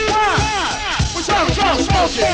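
A go-go band playing live: drums keep a beat of about two a second under a run of falling pitch swoops from a lead instrument.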